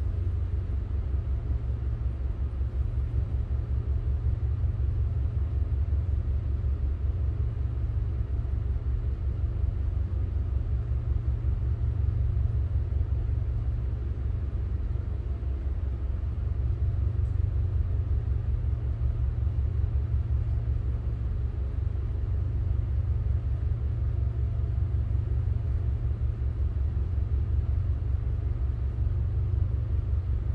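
Tugboat diesel engines running steadily, heard inside the wheelhouse as a low rumble with a fast, even throb.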